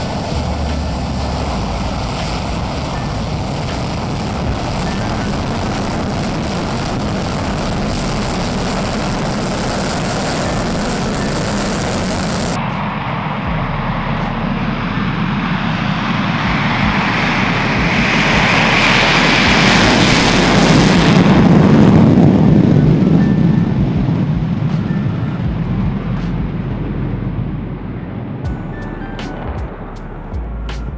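B-1B Lancer bomber's afterburning jet engines at full power on the takeoff roll: a steady, loud rush of jet noise that swells to its loudest about two-thirds of the way through as the bomber passes, then fades.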